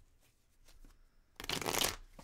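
A deck of tarot cards being shuffled by hand: a few faint card rustles, then a short, dense rush of cards falling together about a second and a half in, the loudest part.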